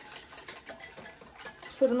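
A spoon stirring seasoned cream in a bowl: soft, irregular scraping and light clinking strokes.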